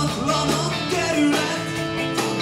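Rock band playing live: electric guitars, bass and drums together, with regular drum hits under held guitar notes.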